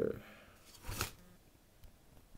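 The end of a rap track: the last word and the beat die away, a faint brief rustle comes about a second in, then near silence.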